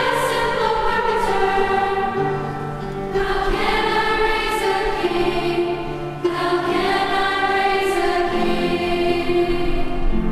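A girls' choir singing in harmony, holding long notes that change every second or two.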